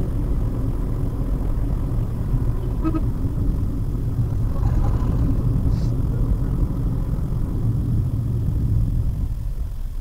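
Steady low road and engine rumble inside a Maruti Suzuki WagonR's cabin while it drives along a road, picked up by the dashcam's microphone.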